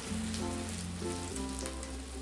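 Slices of egg-soaked French toast sizzling steadily in butter and olive oil on a hot griddle, with quiet background music underneath.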